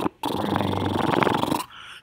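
Glitch sound effect of TV static: a loud, crackling, buzzing noise with a low hum under it. It cuts off about a second and a half in.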